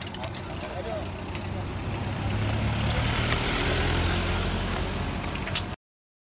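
A motor vehicle's engine running close by, growing louder about two seconds in and then holding steady, with faint voices in the first second. The sound cuts off abruptly near the end.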